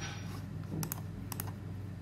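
Computer mouse clicked twice, each a quick press-and-release pair of sharp clicks about half a second apart, over a low steady hum.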